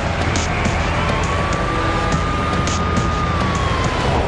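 Dramatic bumper music over a dense rushing noise bed, with a siren-like tone that glides up about a second in, holds, and sinks away near the end.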